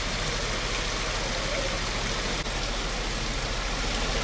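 Floodwater rushing steadily out of a drainage pipe into an open pit.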